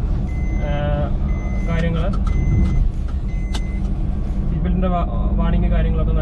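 Maruti Suzuki Alto 800's seat-belt warning chime, a steady high beep repeating about once a second, signalling an unfastened seat belt. A sharp click comes a little past halfway and the beeping stops just after. Low engine and road rumble runs underneath, heard inside the cabin.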